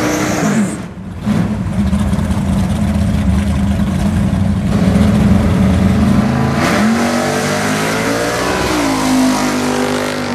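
A drag car's engine winds down at the end of a burnout, its revs falling away about a second in, then runs steadily at the line. About two-thirds of the way through the car launches with a sudden burst and a climbing engine note, which dips and climbs again near the end.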